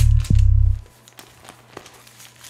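Electronic dance beat with a heavy kick drum, hi-hats and deep bass that stops abruptly under a second in, leaving a faint low hum and one small click.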